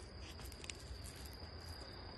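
Crickets calling: a steady high trill with faint flickering chirps above it, over a low rumble.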